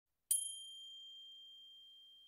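A single high bell chime struck once, about a third of a second in, ringing on one clear tone and slowly fading.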